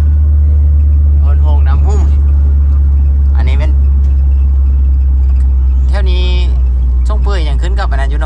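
Steady low drone of a Toyota van's engine and tyres heard from inside the moving cabin, with short bursts of voices over it.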